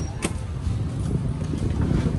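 Busy outdoor ambience of a motorcycle crowd: a steady low rumble of motor vehicles, with a sharp click about a quarter second in.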